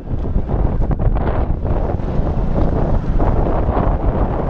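Wind buffeting the microphone: a loud, uneven rumble heaviest in the low end, with no clear pitch.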